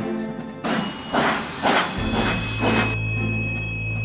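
A rockfall sound effect: a run of noisy crashes and rumbles starting under a second in and lasting about two seconds. It plays over background music, which settles into a low sustained note about halfway.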